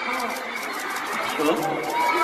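A person's voice through a concert PA, with a high haze of crowd noise behind it.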